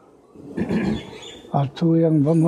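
A short rough, breathy vocal sound about half a second in, then a man's voice starts speaking about a second and a half in.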